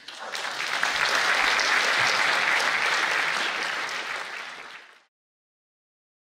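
Audience applauding, a dense clapping that builds within the first second, holds steady, then tapers and is cut off about five seconds in.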